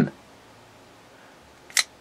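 A folding knife's blade snapping open with a single sharp click near the end, as the finger resting on it slides off and releases it.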